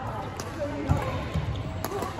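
Badminton rally: the shuttlecock is struck twice by rackets with sharp cracks, and players' feet thud on the wooden court floor between the hits, over a background of voices in the hall.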